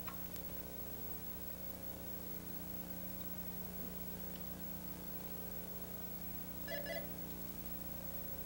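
Steady low hum under a quiet line, with a quick double electronic beep about seven seconds in.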